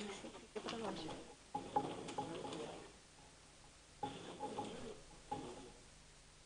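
Faint, off-microphone murmured talk in a room, coming in several short bursts separated by brief pauses.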